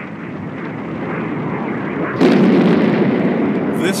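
Mace cruise missile launch: a rushing roar that builds steadily, then jumps suddenly louder a little over two seconds in as the rocket ignites.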